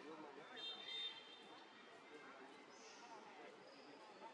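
Quiet outdoor ambience with faint voices. About half a second in there is a short high-pitched animal call, and fainter high calls follow near the end.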